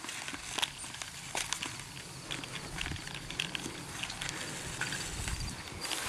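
One-inch black poly drop pipe, with pump cable and safety rope, fed hand over hand down a PVC well casing as a submersible solar pump is lowered into a deep well: faint scattered scrapes and clicks of pipe and cable against the casing, with a low rumble about five seconds in.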